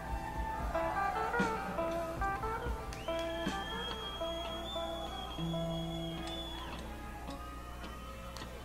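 A live rock band heard on an audience tape: electric guitar picking notes over held tones, with a steady low hum, the level easing off a little toward the end.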